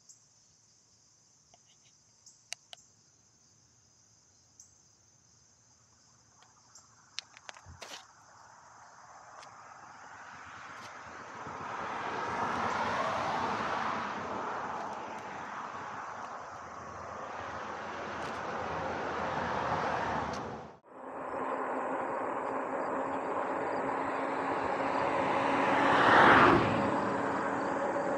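Insects chirring steadily at a high pitch with a few small clicks. Then, from about eight seconds in, a growing rush of wind and road noise on the microphone as the e-bike gets moving, louder near the end.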